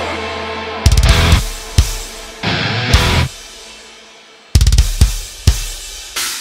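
Heavy metal music: a held distorted chord fades out, then drums and distorted electric guitar hit a run of stop-start accents together, with short gaps where the sound dies away between them.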